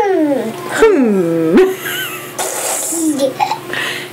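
A toddler's voice: two long hums, each falling in pitch, in the first second and a half, then softer giggly sounds.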